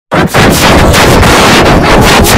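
Heavily distorted, overdriven audio effect: a loud, harsh crackling noise that cuts in right after a split-second of silence at the start.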